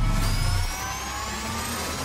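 Logo-intro sound effect: a synthetic riser, several tones climbing slowly together over a whooshing hiss. It eases down in level a little under a second in.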